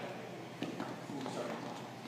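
A few faint knocks and shuffling on the floor as two people step through a stick disarm, the loudest about two thirds of a second in.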